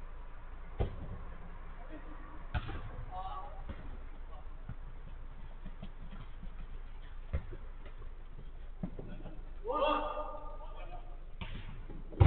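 Football being kicked during a five-a-side game: sharp thuds about a second in, around two and a half seconds, and around seven and a half and nine seconds. Players shout briefly around three seconds and again near ten seconds.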